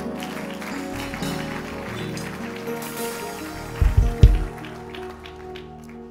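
A live church band playing soft, sustained keyboard chords, with a few deep thumps about four seconds in.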